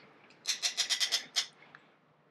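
Patio umbrella's tilt crank mechanism clicking as it is wound to tilt the canopy: a quick run of about ten small ticks lasting about a second.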